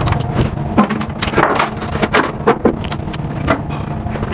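Metal paint cans knocking and clanking as they are handled and shifted, a dozen or so short knocks, some ringing briefly. Under them runs a steady low hum of ship's machinery.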